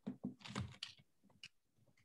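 Computer keyboard being typed on, a quick run of keystrokes entering a short word, which stops about one and a half seconds in.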